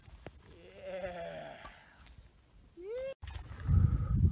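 A skier's wavering yell about a second in, then a short rising whoop just before an abrupt cut. After the cut comes a loud low rumble of skiing through deep powder snow.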